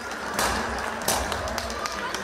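Wedding-hall din: a noisy crowd with a low thumping beat, and sharp cracks about half a second and a second in.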